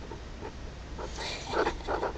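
A pet animal making a few short, soft vocal sounds in the second half.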